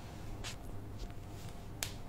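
Small handling noises of bead jewellery being handled by hand: a soft rustle about half a second in and a sharp little click near the end, over a faint low hum.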